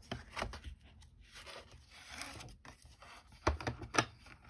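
Card stock being handled: sheets rustling and sliding over a cutting mat, with a few soft taps near the end as a folded card base is laid down and pressed flat.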